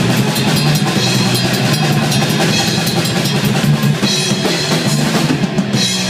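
Live heavy metal band playing: rapid drumming on a full kit with bass drum and cymbals, under electric guitar.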